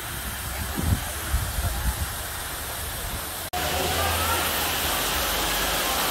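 Steady hiss and splash of water pouring down from a fountain onto rocks, with a brief dropout about three and a half seconds in, after which the noise is louder and distant voices are heard.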